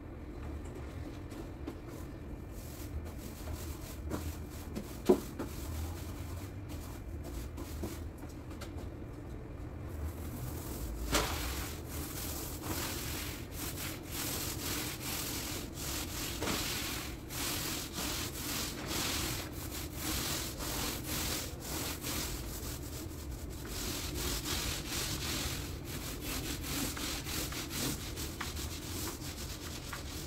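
A paint edging pad on a pole being drawn along the wall where it meets the ceiling, a repeated rubbing with each stroke that sets in about ten seconds in. Before that, quieter handling noise with a sharp click about five seconds in.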